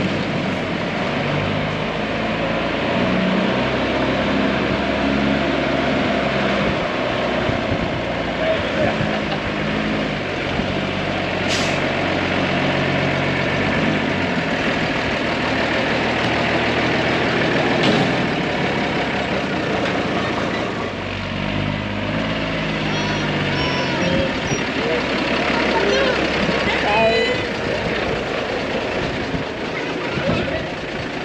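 Mercedes-Benz Unimog truck's diesel engine running as it pulls out and drives past, its pitch rising and falling as it moves off. Two short hisses of air partway through, typical of the truck's air brakes.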